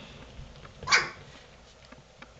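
A three-week-old golden retriever puppy gives a single short, sharp yip about a second in while the litter plays.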